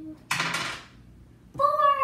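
A brief rustle lasting about half a second, then a child's voice holding a long, high note that slowly falls, starting near the end.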